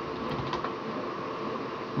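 Steady background hum and hiss of machinery, with a faint click about half a second in.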